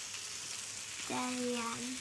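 Food sizzling steadily in a hot pan, a continuous frying hiss, with a short hummed 'mm' held on one note about a second in.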